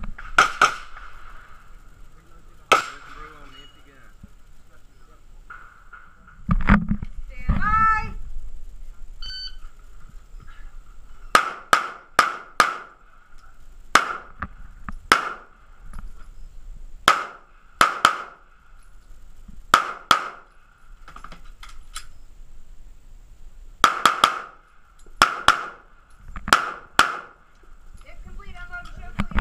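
A short voice command and then a shot-timer beep, followed by a semi-automatic pistol firing about twenty shots in pairs and quick strings over some sixteen seconds: an IDPA stage being shot against the clock. Two sharp reports come in the first few seconds before the command.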